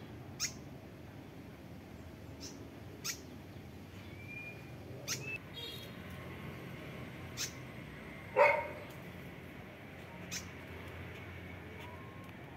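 Short, sharp high bird chip calls, one every second or two, with a brief whistled note about four seconds in. One louder, lower call comes about eight seconds in.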